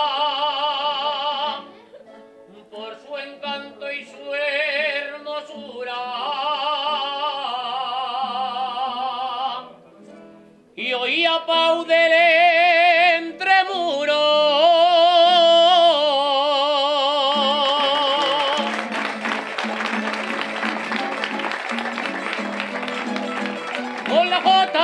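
Aragonese jota: a solo voice sings in long phrases with a heavy vibrato, over a plucked-string rondalla of bandurrias and guitars. About three-quarters of the way through the singing stops, and the strings carry on with a busy strummed passage to the end.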